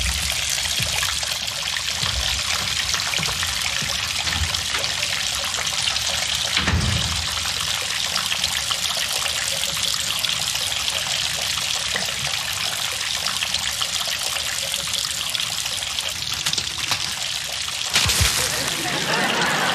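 Water from a leaking roof trickling and dripping steadily, with one low thud about seven seconds in.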